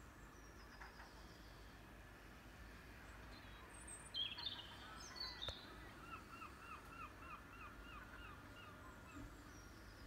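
Faint birdsong: a few high chirps about four seconds in, then a run of about eight repeated hooked notes, roughly three a second, over a steady low background rumble.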